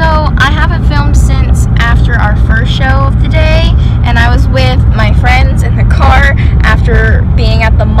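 Steady low rumble of road and engine noise inside a moving car's cabin, under a girl's voice talking throughout.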